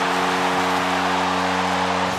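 Arena goal horn sounding one long, steady low chord over a cheering crowd, signalling a home-team goal; the horn cuts off at the very end.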